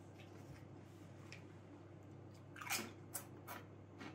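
A Doritos corn tortilla chip crunched while chewing: a quick run of quiet crunches about two and a half to three and a half seconds in, with faint room tone around them.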